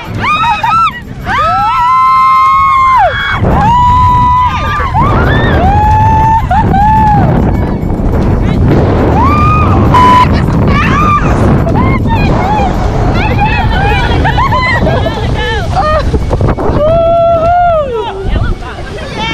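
Several women screaming and shrieking in long, drawn-out cries as they ride linked snow tubes down a tubing hill. From about three seconds in, a loud low rush of wind and snow runs under the screams as the tubes pick up speed.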